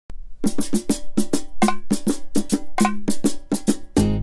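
Percussion intro to a salsa song: a quick, steady run of drum strokes at two or three low pitches, about five a second, starting about half a second in.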